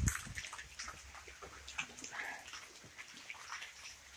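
Light rain falling: faint, scattered drops and drips patter irregularly over a soft hiss.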